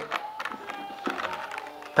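Background music with sustained tones, with a few light clicks of a knife and its leather sheath being handled.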